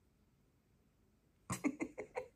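Near silence for about a second and a half, then a woman's voice breaks in near the end with a quick run of four or so short bursts.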